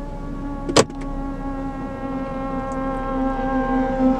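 Motorcycle engine held at steady revs, a buzzy drone that sounds like a cartoon motorcycle, its pitch sagging slightly near the end. One sharp click about a second in.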